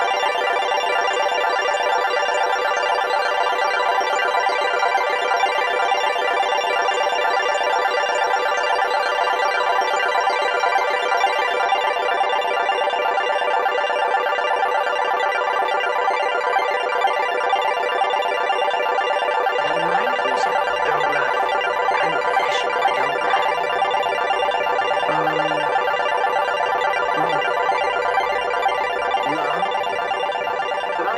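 Music: a dense wall of sustained held tones, with lower bass notes coming in about twenty seconds in.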